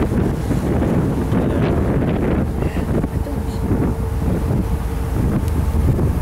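Wind buffeting the microphone on the open deck of a moving boat: a steady low rumble, with a faint steady hum for a few seconds in the middle.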